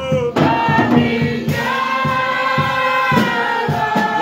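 Voices singing a gospel song together, holding long notes, over a low percussive beat.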